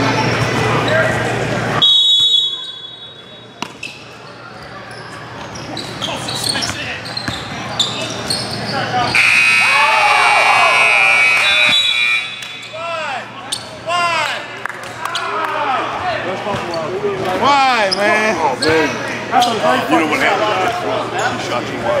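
Basketball game sounds on a hardwood court: the ball bouncing and short knocks, then a scoreboard buzzer sounding for about three seconds roughly nine seconds in, which marks the end of the game. Excited shouting follows.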